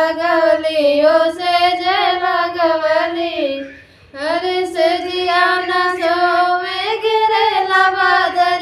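Two women singing a Bhojpuri folk song without instruments, in long held, wavering notes, with a short breath break about four seconds in.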